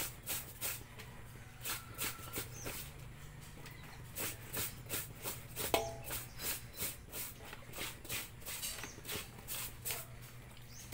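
Clothes being scrubbed by hand in a metal washbasin: wet fabric rubbed in repeated short strokes, about two to three a second. A brief animal call sounds about halfway through.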